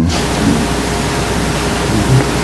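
Loud, even hiss like radio static, starting abruptly.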